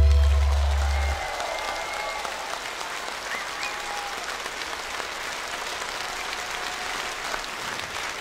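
Large concert-hall audience applauding at the end of a song. The band's last low note fades and cuts off about a second in, leaving steady applause.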